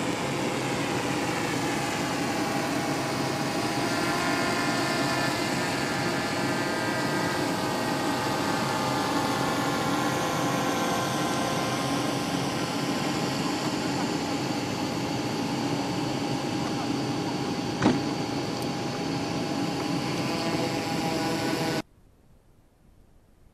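Steady whine of a jet turbine engine running, a dense set of whining tones over a rushing noise, with some tones shifting slightly in pitch early on. A single sharp click comes near the end, and the sound cuts off suddenly at the very end.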